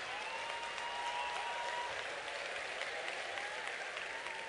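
Audience applauding steadily, with a few faint voices over the clapping.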